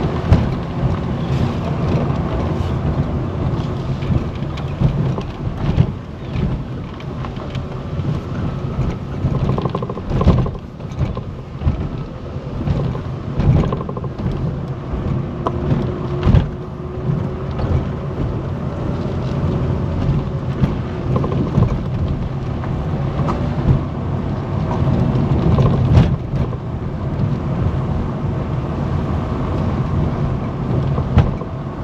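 Car driving over a rough concrete-slab road, heard from inside the cabin: a steady low rumble of tyres and engine with frequent knocks and jolts from the uneven surface.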